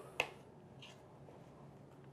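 A kitchen knife cutting the end off a radish, with one sharp click of the blade against a plastic cutting board just after the start.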